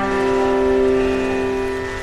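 Background music: a soft piano chord held and slowly fading, with no new notes struck.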